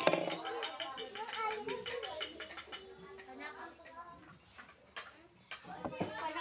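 Children talking, with scattered light clicks and taps of spoons against plates as they stir paste.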